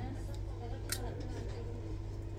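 A single short plastic click as a disposable syringe and needle are handled, over a steady low hum and faint voices in the background.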